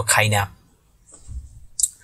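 A man's voice breaks off about half a second in. Near the end comes a single short, sharp click of a computer mouse button.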